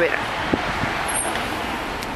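Steady road traffic noise from a city street.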